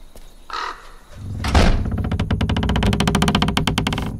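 A wooden door's bolt scraping briefly, then the door's hinges creaking loudly as it swings open, a long rasping creak whose pulses come faster toward the end.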